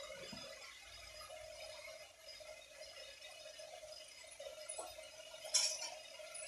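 Faint steady hum in a quiet kitchen, with one short metal clink near the end from a steel ladle against an aluminium pressure cooker.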